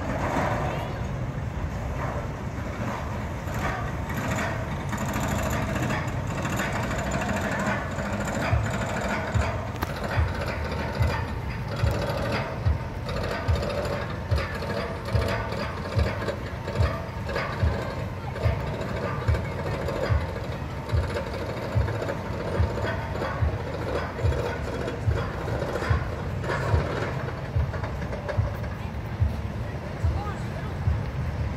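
Arrow Dynamics corkscrew coaster's lift hill hauling the train up. Its anti-rollback dogs clack in a steady rhythm a little faster than once a second, starting about eight seconds in.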